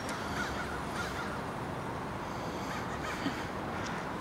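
Harsh bird calls, short caws repeated several times over steady outdoor background noise.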